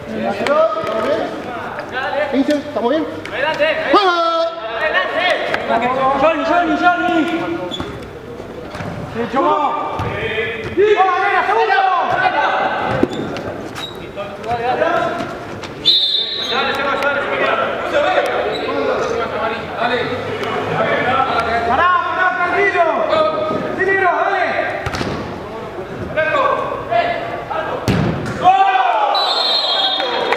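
Players shouting and calling to each other across an echoing indoor five-a-side pitch, with the ball thudding off feet and the boards now and then.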